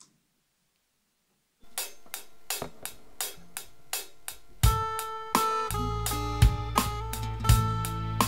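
Live worship band starting a song: after a short silence a steady ticking beat begins, and about three seconds later electric guitars and a bass guitar come in with a sustained low bass line under picked guitar notes.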